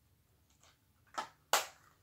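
Plastic DVD case being handled: a few faint clicks, then two sharp clacks a little over a second in, the second the loudest.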